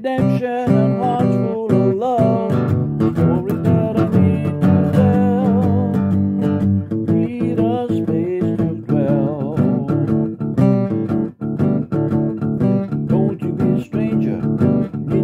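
Acoustic guitar strummed with a pick in a steady blues rhythm, with a man's voice singing over it through most of the stretch.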